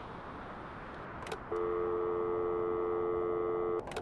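Telephone dial tone: a click, then a steady two-note tone lasting about two seconds, cut off by another click.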